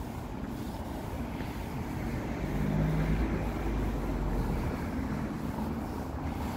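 A motor vehicle's engine rumble, swelling to its loudest a few seconds in and easing off again, over a steady low outdoor hum.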